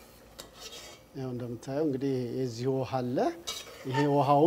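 A metal utensil clinking a few times against a glass bowl of stir-fried vegetables. About a second in, a man's voice comes in, drawn out with no clear words, louder than the clinks, and one more clink follows near the end.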